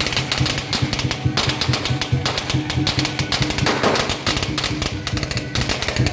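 A long string of firecrackers going off in rapid, irregular cracks, starting suddenly and running on for several seconds. Traditional procession music plays underneath.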